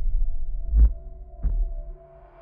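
Trailer sound design: a deep, sustained low drone with held tones, pulsed by two heavy low thumps about two-thirds of a second apart, like a heartbeat.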